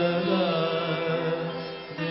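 Odissi classical dance music in raga Saberi: a melody line with wavering, sliding ornaments held over a steady low drone.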